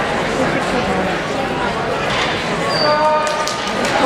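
Indistinct chatter of many voices echoing in a large hall. Near the end come a held steady tone and a few sharp clicks.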